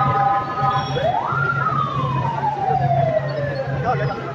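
A wailing siren: a quick rise in pitch about a second in, then a slow fall over about three seconds, starting again at the very end. In the first second a steady chord of several tones sounds, over a continuous low hum.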